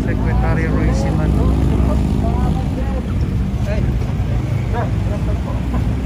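Road traffic rumble with a vehicle engine's steady hum that fades out after about two and a half seconds, under scattered voices.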